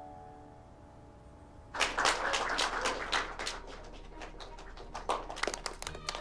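Soft piano notes dying away, then about two seconds in a small group of people breaks into applause, a dense run of irregular claps.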